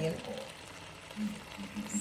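A woman's voice trails off, then a low hummed voice comes in near the end, over a faint steady hiss of a pot of egusi soup simmering on the stove.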